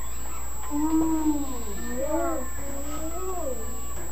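A young child's voice making long, wavering vocal sounds without clear words, sliding up and down in pitch, from about a second in until shortly before the end.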